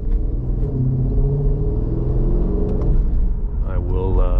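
Cabin sound of a 2020 Jeep Grand Cherokee SRT's 6.4-litre HEMI V8, fitted with Kooks headers and a Borla S-Type exhaust, giving a steady deep rumble as the SUV gathers speed gently at low road speed.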